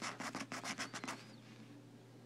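A coin scratching the coating off a scratch-off lottery ticket: a quick run of about ten short scrapes that stops a little past a second in.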